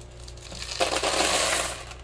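Expanded clay pebbles (hydroton) rattling as they are tipped out of a plastic hydroponic net pot into a plastic bowl: a grainy clatter lasting about a second in the middle.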